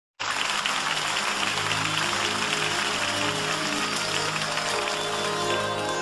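Audience applauding over sustained low held chords of a song's opening; the applause dies away near the end as the music carries on alone.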